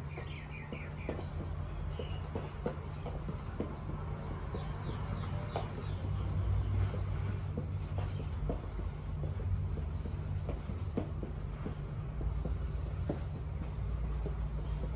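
Footfalls and shuffles of a person dancing on a hard floor without music, irregular light thuds and taps, over a steady low hum. A few short series of bird chirps come near the start and about five seconds in.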